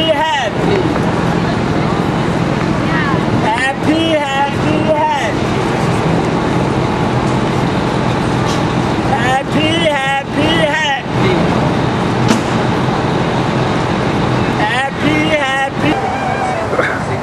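Outdoor street ambience with a steady hum of traffic, broken three times by a person's voice calling out in wavering, drawn-out phrases of a second or two each.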